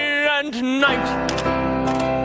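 A man sings the last held note of a song in a mock-operatic style, his voice swooping up in pitch about half a second in. The accompaniment then holds a sustained closing chord.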